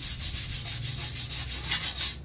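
Refinishing work on a rusty iron bench: a steady, high hiss that runs for about two and a half seconds and then cuts off suddenly.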